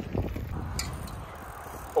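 A bicycle rolling along asphalt, heard from the rider's handheld phone: a steady low rumble of tyres and air, with a faint click just under a second in.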